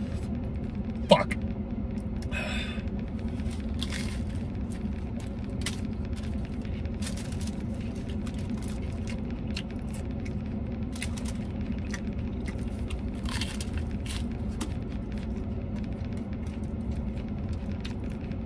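A man chewing a taco with wet mouth clicks and a few short breaths, over a steady low hum inside a vehicle cab.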